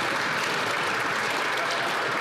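A chamber full of legislators applauding steadily, with voices calling out over the clapping.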